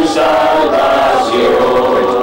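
A choir of voices singing together, holding long notes that shift slowly in pitch.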